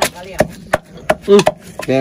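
Wooden pestle pounding dried red chillies in a clay mortar: a steady run of dull knocks, about five strokes in two seconds. A voice briefly near the end.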